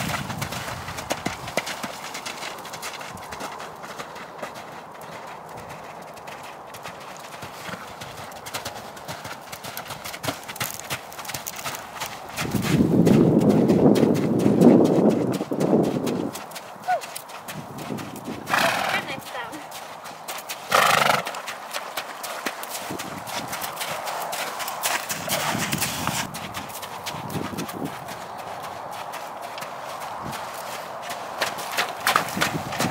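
Hoofbeats of a ridden horse trotting and cantering on soft, wet arena ground. A louder sound swells in the middle, and two short sharp sounds follow a few seconds later.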